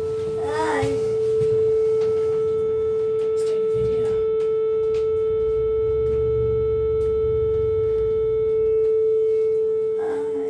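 Inside an Otis passenger lift car travelling down: a steady high hum, with a low rumble of the car's travel from about three and a half to nine seconds in.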